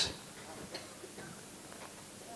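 Quiet room hiss with a few faint, sharp clicks and faint far-off voices of audience members calling out answers.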